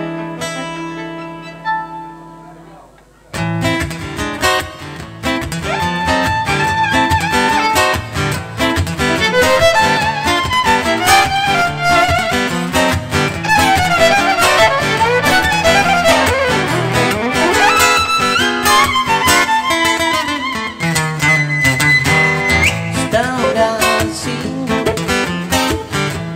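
Instrumental intro on acoustic guitar and violin. A held note dies away, then about three seconds in the guitar starts strumming steadily while the violin plays a sliding melody over it.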